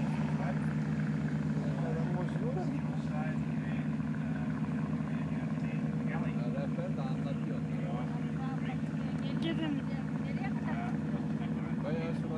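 A steady low engine drone, unchanged in level throughout, with people chatting faintly in the background.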